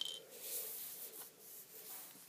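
A click, then faint rubbing that comes and goes, like something brushing or scuffing against a surface close to the microphone.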